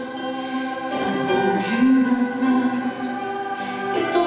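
Recorded choral music: several voices singing long held notes that shift slowly in pitch.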